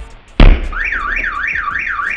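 A heavy object smashes into a car windscreen with one loud crash, and the car's alarm goes off at once: a siren wailing up and down, about two and a half sweeps a second.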